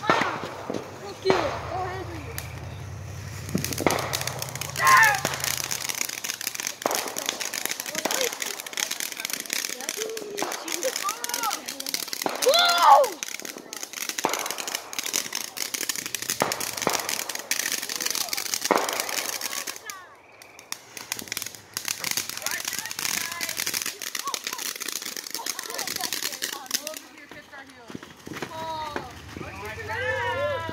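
Ground fountain firework spraying sparks: a steady hiss with dense crackling pops, easing off briefly about two-thirds through before picking up again. Voices shout or laugh over it a few times.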